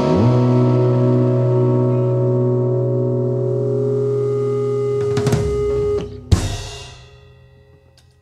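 Rock band's final chord held on electric guitars and bass, with a low note sliding up into it at the start. A short run of drum strokes comes about five seconds in, then a last sharp drum and cymbal hit about a second later, after which the ringing dies away.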